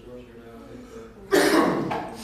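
A person coughing once, loudly, about a second and a half in, over faint speech.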